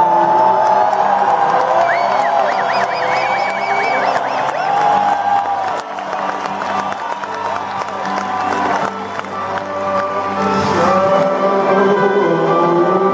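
Live band music with acoustic guitar, heard through a large arena's echo, while the audience cheers and whoops. Wavering high whoops stand out about two to four seconds in.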